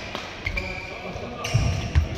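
Badminton rally: a racket strikes the shuttlecock about half a second in and again at the end, with players' feet thudding on the court mat in between.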